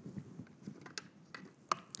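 Plastic clicks and knocks from a stick vacuum's dust cup being handled while its bottom release tab is pushed, several light clicks and one louder click near the end as the latch lets the bottom flap drop open.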